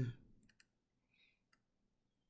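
A few faint, sharp clicks from a computer pointing device working the software's zoom tool, with a soft faint rustle between them.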